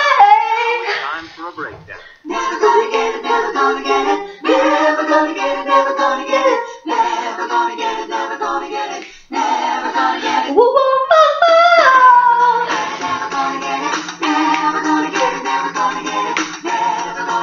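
A woman singing an R&B song in long held notes, with a brief break about two seconds in and a sliding rise up to a high note around eleven seconds in; a low steady tone sits under the voice near the end.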